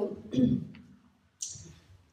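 A woman's hesitant speech into a handheld microphone: a brief fragment of a word, a pause, then a short hiss about one and a half seconds in.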